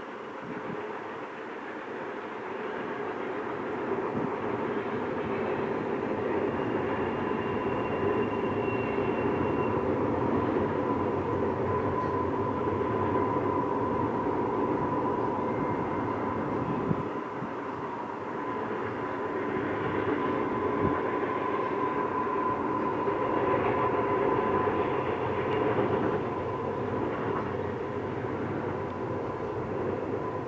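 Double-stack container cars of a freight train rolling past: a steady rumble of wheels on rail, with a thin steady whine running through it and a few sharp knocks. The rumble builds over the first few seconds and eases briefly a little past the middle.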